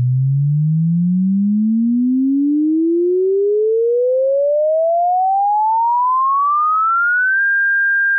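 Sine-wave test-tone sweep from 100 Hz to 1600 Hz: a single pure tone climbing smoothly and steadily in pitch, then holding on the top note for about the last half second.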